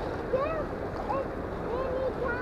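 Steady rush of flowing river water, with faint, distant voices over it.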